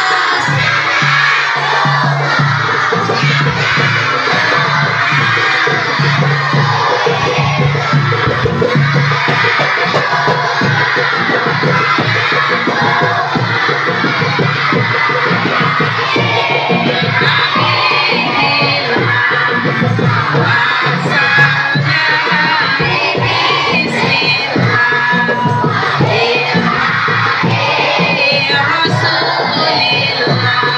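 A crowd of children singing sholawat together, loud and shouty, with a woman leading them over a microphone, over marawis hand drums and a large drum beating a steady rhythm.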